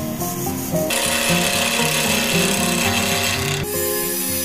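Wood being cut on a spinning lathe, a coarse scraping hiss that starts about a second in and stops abruptly near the end, over acoustic guitar music.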